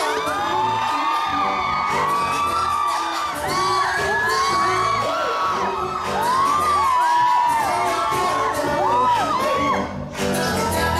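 A concert sound system playing a pop track, with a crowd of fans screaming and whooping over it; the music dips briefly right at the end.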